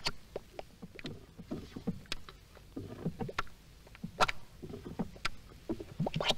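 Bubbling mud pot: irregular plops and gurgles as gas bursts through hot, thick mud, a few a second, with sharp pops among them, loudest about four seconds in.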